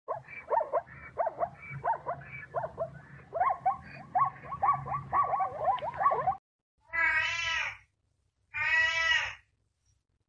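Plains zebra calling: a quick run of short yelping barks, each falling in pitch, a few per second for about six seconds. Then a domestic cat meows twice, each meow under a second long.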